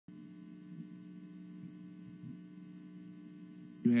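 Steady electrical mains hum: a low, even buzz with a stack of evenly spaced overtones and no change in pitch. A man's voice starts right at the end.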